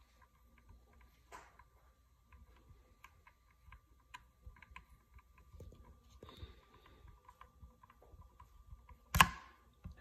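Faint scattered clicks and small handling noises of hands working at a bench, over a faint steady high whine, with one sharp knock near the end.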